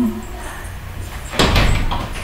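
A sudden loud noise, like a knock or thump with a rustle after it, about one and a half seconds in, over a low steady hum.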